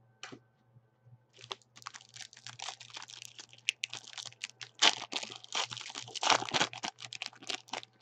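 A foil trading-card pack being torn open and its wrapper crinkled in the hands: a dense, crackling run of tearing and rustling that starts about a second and a half in and is loudest in the second half.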